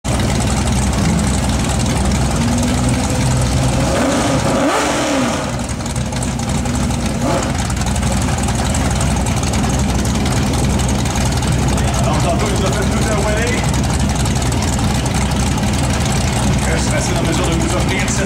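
Nissan 240SX engine idling, with a short rev that rises and falls about five seconds in.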